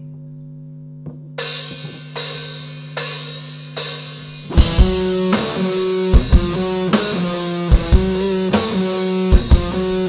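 A live rock band on electric guitars, bass and drum kit starting a song. A low amplifier hum gives way, a little over a second in, to struck chords about every 0.8 s. Just under halfway through, the bass and drum kit come in with a steady kick drum and the full band plays on.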